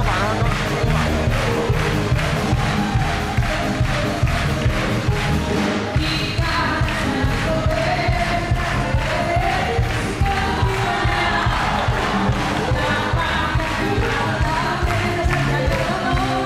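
Live band music with a steady beat, heard over audience noise; a melody line comes in about six seconds in.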